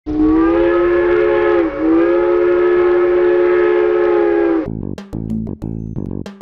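Steam locomotive chime whistle sounding a chord of several notes in two blasts run together, a short one and a longer one, with the pitch sagging briefly between them. It cuts off near the end, and music with plucked guitar and bass begins.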